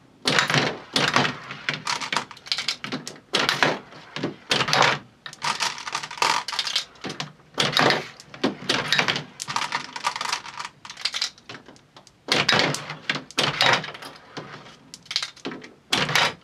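Glass marbles fired one after another from a Cross Fight B-Daman toy shooter, clicking and clattering across the plastic-walled arena and knocking into plastic pucks. There are rapid, irregular clicks throughout, with a few louder clusters.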